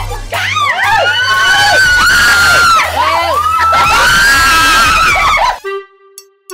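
Several people giving loud, excited high-pitched cries, long overlapping wails that rise and fall in pitch, over background music with a steady low beat. It all cuts off suddenly near the end, leaving a few short ringing tones.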